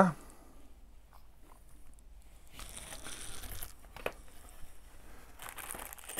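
Faint rustling and crinkling as parts are handled in a foam-lined cardboard box, in two short stretches, with a single light click about four seconds in.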